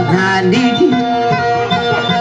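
Dayunday music played on plucked guitar, with a steady held note and melodic phrases running on.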